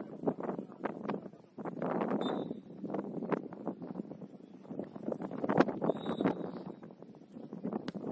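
Gusting wind on the microphone, rising and falling, with scattered small clicks. Just before the end comes a sharp knock: a football struck for a free kick.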